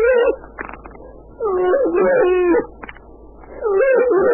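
Long, wavering, howl-like cries from a voice, each about a second long, repeating every two seconds or so: one ends just after the start, one falls in the middle, and another starts near the end.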